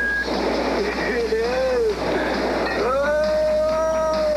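A person's voice in long wordless pitch glides that rise and fall, ending in a long held note about three seconds in.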